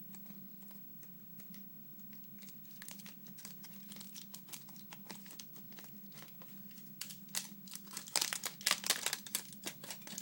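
Aluminium foil crinkling as a small, many-times-folded sheet is unfolded by hand. It is faint at first and grows into louder, denser crackling in the last few seconds.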